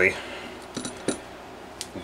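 A handful of light metallic clicks and clinks, spaced irregularly, as the front housing and front half of the two-piece crankshaft of an O.S. FF-320 Pegasus engine are worked loose from the crankcase by hand.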